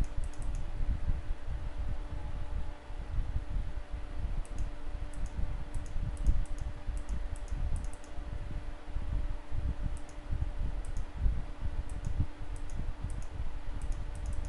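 Computer mouse clicking in scattered groups of quick clicks, the clicks that place the points of a line on screen, over a low rumble and a faint steady hum.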